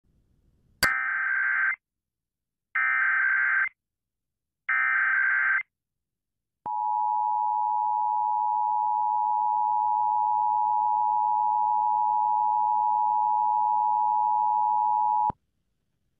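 Emergency Alert System header: three one-second bursts of SAME digital data tones, a second apart, then the EAS attention signal, a steady two-tone alarm held for about nine seconds that cuts off suddenly. It marks the start of a Required Monthly Test alert.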